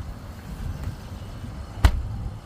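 A car's front door shut with one solid thud near the end, over a low steady rumble.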